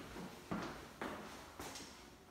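Footsteps on a hard tile floor, about two steps a second.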